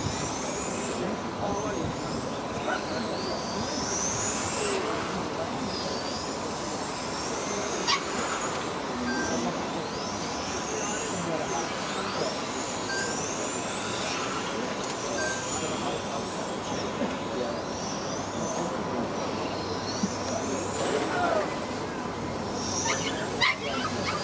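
1/10-scale electric touring cars with 17.5-turn brushless motors racing round the circuit: high motor whines rise in pitch again and again as the cars accelerate out of the corners, over a steady background hiss.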